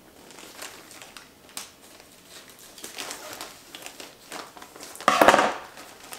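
Packaging crinkling and rustling as a mailed package is cut and pulled open by hand, with scattered small crackles and one louder rustle of about half a second about five seconds in.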